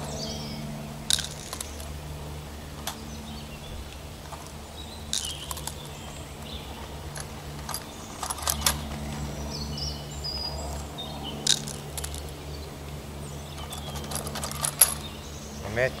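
Small clicks and rattles every few seconds, often two or three close together, as bean seeds are dropped down a homemade plastic-tube seeder into the soil. Birds chirp faintly in the background.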